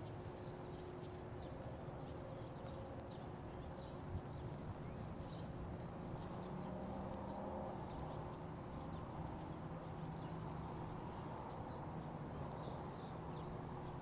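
Footsteps clicking on the glass walkway deck of a footbridge, a few a second with short pauses, over a faint steady hum.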